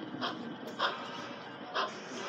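Rhythmic chuffs from a model railroad steam locomotive's sound system, coming more slowly: three spaced-out puffs, with the beat slowing as the train eases off.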